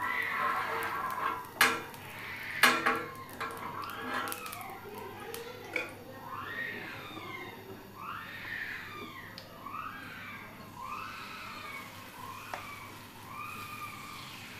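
A metal spoon scrapes and clinks on an iron tawa as oil is spread over it, with two sharp clinks in the first three seconds. From about four seconds in, a high call that rises and falls repeats roughly once a second in the background.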